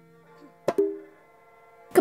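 Traditional Mak Yong ensemble music, played on rebab, two-headed drum and tetawak gongs: a struck note rings on and fades. About two-thirds of a second in, two quick struck notes sound and ring out briefly.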